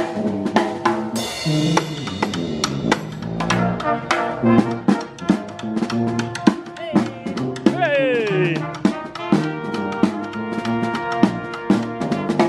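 Small street brass band playing a lively tune: sousaphone bass, trombones and trumpet over a marching drum beating a steady rhythm with cymbal hits. A falling glissando comes about eight seconds in.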